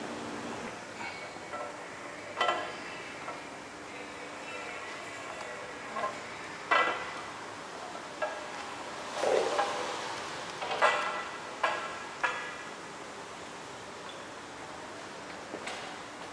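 Aluminium tubes of a tire rack knocking and clinking against its metal frame as they are fitted. There are about eight separate ringing metallic knocks, the loudest about seven and eleven seconds in.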